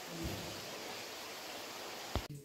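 Steady hiss, with a faint soft low bump about a quarter of a second in.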